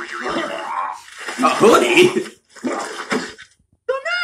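Voice sounds in three bursts with no clear words, loudest in the middle burst, then a short pause.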